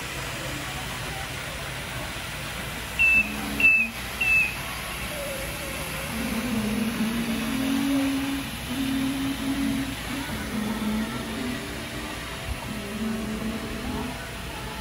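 Tennant T7 AMR robotic floor scrubber running with a steady machine hum under store background noise. Three short high beeps sound about three to four and a half seconds in, and faint background music comes in from about six seconds.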